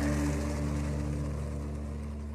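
Monster truck engine rumbling steadily at idle, slowly fading away.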